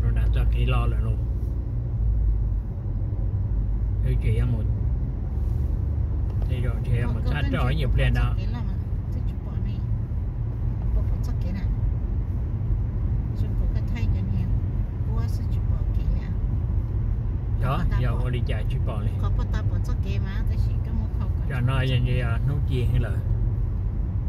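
Steady low road and engine rumble heard from inside the cabin of a moving car, with people talking at intervals over it.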